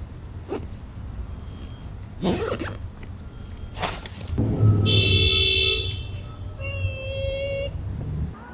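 City street traffic rumbling steadily, with short rustles and knocks as a backpack is handled in the first few seconds. About halfway through, a loud, high, steady tone is held for about a second, with a fainter tone near the end: street sounds such as a vehicle horn or brake squeal.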